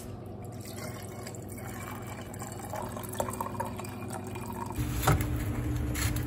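Lemonade poured from a glass pitcher into glasses of ice, a steady trickle that slowly grows louder as the glass fills. Near the end the sound changes abruptly to a low steady hum with a sharp knock.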